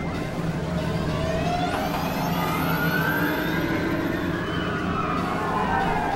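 Experimental synthesizer drone: a steady low hum under several tones that glide up and down in slow, siren-like arcs, with a thin high tone sweeping in about two seconds in.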